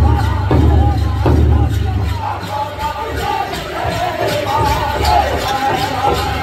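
Powwow drum and singers: a big drum struck in a steady beat, under high, wavering group singing, with crowd noise in a large hall. The drumbeats are strongest in the first two seconds.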